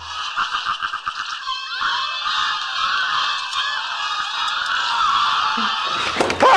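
The soundtrack of a film playing on a screen: a steady hiss-like noise with faint, wavering voice-like sounds in it.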